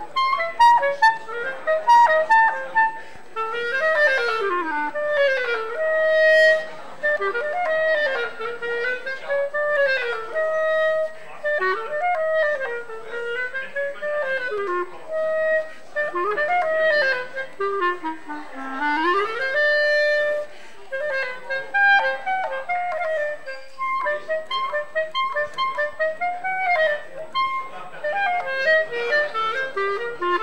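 Solo clarinet playing a lively melody, with quick runs up and down the scale between a few held notes.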